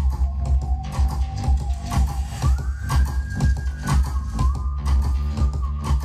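Electronic dance music with a steady heavy bass beat played loud over two Sony mini hi-fi systems, a GPX-8 and a GPX-77, running the same track at once, with the GPX-8 started slightly ahead of the GPX-77.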